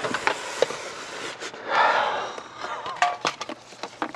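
Small plastic clicks and rustling from wiring-harness connectors and loose wires being handled behind a car's dashboard, with a longer rustle near the middle.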